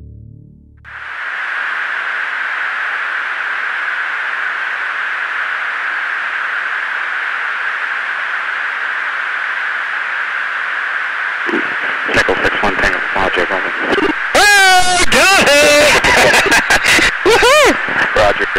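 Steady hiss of an F/A-18 cockpit intercom recording, narrow like a radio channel. Past the middle, aircrew voices come in over it, getting loud and busy near the end.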